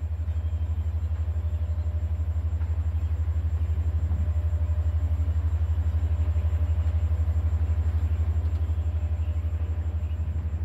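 A low steady tone pulsing on and off rapidly and evenly, an isochronic-tone backing bed, with faint steady higher tones above it.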